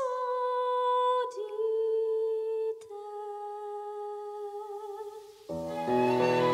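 A female singer's voice alone, holding long, slow notes that step down in pitch, the last one softer. Near the end a string orchestra comes in with a loud, full chord.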